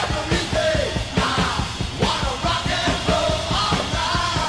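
A rock song playing, with a steady driving drum beat under yelled, sung vocals.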